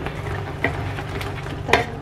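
A spatula stirring and spooning sauce in a non-stick frying pan, with a few sharp clicks of the spatula against the pan. A low steady hum runs underneath.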